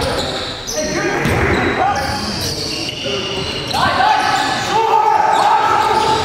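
Live indoor basketball game: the ball bouncing on the hardwood gym floor and players calling out, echoing in the hall. Several long, high squeals near the end, typical of sneakers on the court.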